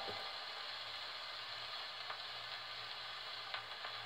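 Faint surface hiss of a 78 rpm shellac record under the steel needle of an HMV 102 portable gramophone, after the music has ended, with a low steady hum and a few light clicks, the clearest about two and three and a half seconds in.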